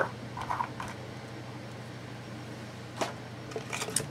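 Quiet room tone with a steady low hum, a faint brief murmur about half a second in, and one sharp click about three seconds in followed by a few soft ticks from small cosmetic sample packages being handled.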